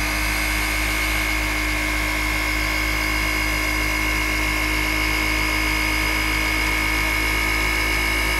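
Flex cordless random orbital polisher with a microfiber pad running at a steady speed, working polish across a painted hood panel. Its motor holds one even pitch throughout.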